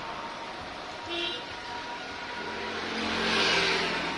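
A motor vehicle passing on the street, its engine and road noise building to a peak about three and a half seconds in.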